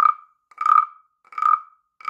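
BSIRI carved wooden frog rasp, its stick scraped along the ridged back, making a frog-like ribbit. The croaks repeat evenly, about three in two seconds, each with the same pitched tone that dies away quickly.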